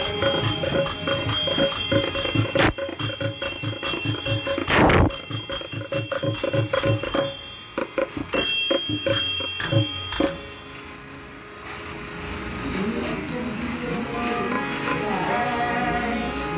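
Small brass hand cymbals (jalra) struck in a steady beat, ringing, along with hand clapping; the rhythm stops abruptly about ten seconds in. Voices follow.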